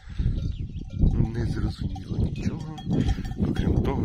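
Cows grazing right up close: grass torn and chewed near the microphone, with a cowbell clanking now and then.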